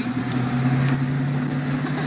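Car engine and road noise heard from inside the cabin while driving at steady speed: a constant low drone.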